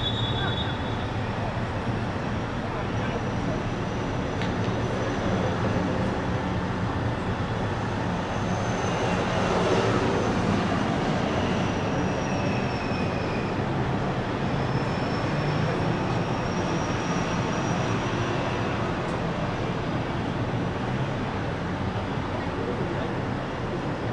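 Steady outdoor ambience over an open soccer pitch: a constant rush of noise that swells slightly around the middle, with faint high whines that slide slowly down and then back up.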